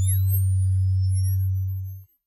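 Electronic logo-intro sound effect: a loud, steady, deep synthetic hum with thin high tones gliding up and sliding down over it, cutting off right at the end.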